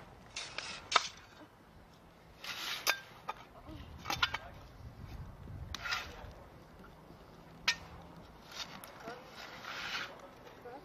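A shovel working soil in short, separate strokes, scraping and scooping dirt back into a tree-planting hole, with a few sharp clicks of the metal blade.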